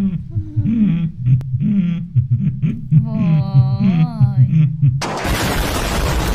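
A person's voice with wavering, gliding pitch for about five seconds, then a sudden loud explosion sound effect, a blast of noise lasting a little over a second.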